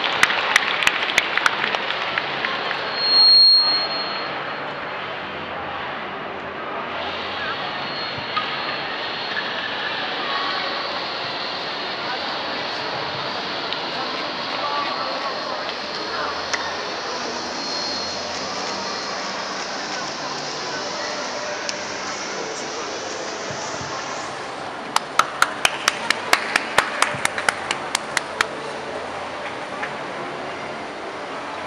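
Applause as a child pianist is introduced, then a simple beginner's piano piece played quietly under steady crowd chatter and mall noise, with a brief high ping a few seconds in. A run of sharp claps comes near the end.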